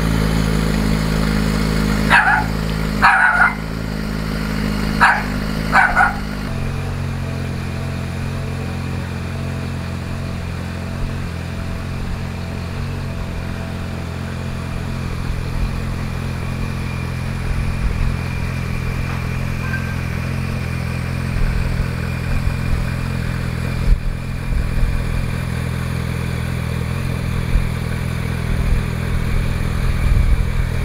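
A dog barks four times, in two pairs, during the first six seconds. Under it a motorcycle engine idles steadily, its note changing slightly a little after six seconds in.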